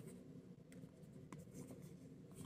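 Faint hand-shuffling of a deck of tarot cards: a few soft, light clicks of cards slipping against each other over near silence.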